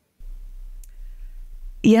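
A short pause in conversation filled by a faint, steady low hum, with one small click about a second in; a woman's voice begins near the end.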